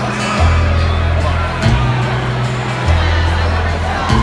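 A live band playing a slow song, heard from within the audience: acoustic guitar with an upright bass holding long low notes that change about every second and a half. People are talking near the recording phone.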